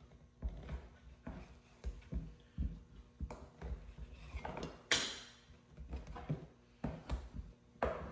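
Plastic knives cutting through bread dough and knocking on a tabletop: a run of soft, irregular taps and knocks, with one sharper click about five seconds in.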